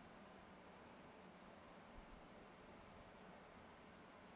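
Dry-erase marker writing on a whiteboard: faint, short strokes, several a second, as words are written out.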